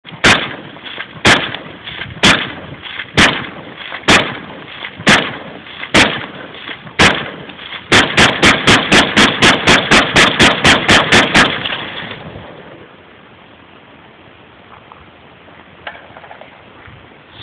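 Suppressed 12-inch POF-USA P308 gas-piston rifle in .308 firing: eight single shots about a second apart, then a rapid string of about sixteen shots at four to five a second that stops suddenly, each shot followed by a short ring.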